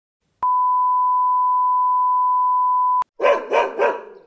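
A steady, high electronic beep held for about two and a half seconds, stopping abruptly. Right after it, a dog barks three times in quick succession.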